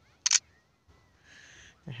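Smartphone camera app's shutter sound as a photo is taken: one short, sharp double click about a quarter second in.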